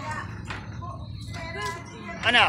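Faint voices in the background, in short broken snatches over a steady low hum.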